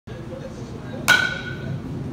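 A metal baseball bat striking a ball once, about a second in: a sharp crack followed by a ringing ping that fades over most of a second.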